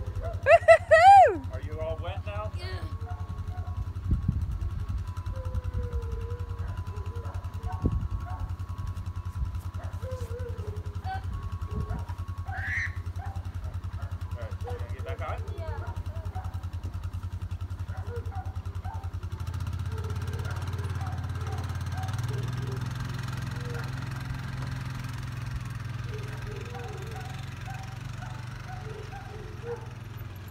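ATV engine idling steadily, then revving up about twenty seconds in as the quad pulls away. A loud, high-pitched shout about a second in.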